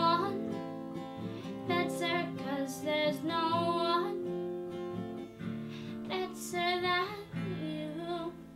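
A woman singing long, wavering held notes over a strummed acoustic guitar. It is the end of the song: the last chord dies away near the end.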